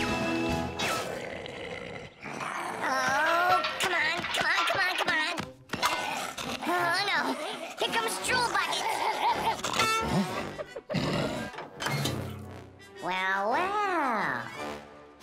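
Cartoon background music with wordless character vocal sounds, ending with a long cry that rises and falls in pitch near the end.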